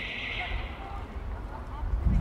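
Outdoor street ambience with faint, distant voices; a high hiss fades out within the first second.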